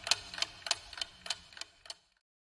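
Clock-ticking countdown sound effect, a steady tick about three times a second that stops near the end, timing the pause for answering a quiz question.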